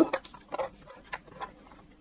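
A few light, scattered clicks and taps, about five over two seconds, as fingers handle loose stickers in a clear plastic case.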